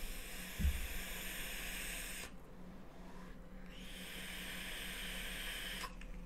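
Long draw on a Knight mechanical mod: a steady hiss of air and vapour pulled through the atomizer as the coils fire. It comes in two stretches with a break of about a second after two seconds, and cuts off just before the end.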